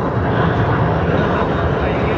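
Yak-110 aerobatic aircraft flying a display pass, its engines heard as a steady drone from the ground, with indistinct speech mixed in.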